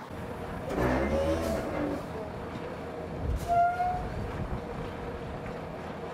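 Heavy-truck traffic in a long queue of lorries: engines running with a low rumble that swells about a second in. A short horn note sounds about three and a half seconds in.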